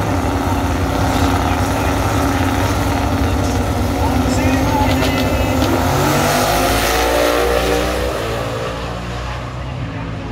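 Two drag cars, an XW Falcon and a VL Calais Turbo, running loudly at the start line. About six seconds in they launch, their engines rising in pitch as they accelerate away down the strip, and the sound fades near the end.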